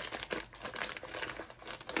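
Plastic packaging of a diamond-painting toolkit crinkling irregularly as it is handled and opened.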